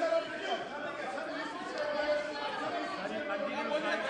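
Chatter of many voices talking over one another in a large parliamentary chamber, with no single voice standing out.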